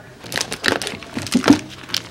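Dog toys and their plastic packaging being rummaged in a plastic storage bin: a run of irregular rustles, crinkles and knocks, the loudest about one and a half seconds in.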